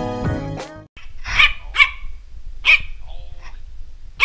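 Background music fades and cuts off under a second in, then a Yorkshire Terrier barks: three sharp, high-pitched barks followed by a softer, lower one.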